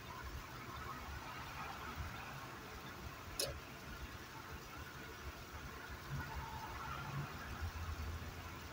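Steady road noise inside a moving car: a low engine and tyre rumble with a faint hiss, and a single sharp click about three and a half seconds in.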